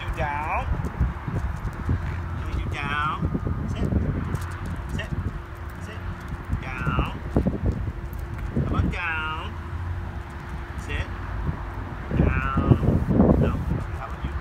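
Corgi puppies whining in short, high-pitched whines, about five of them spread through the stretch, with wind rumbling on the microphone.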